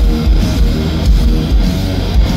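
Live hard rock band playing loud, with a distorted electric guitar riff over bass and drums keeping a steady low beat.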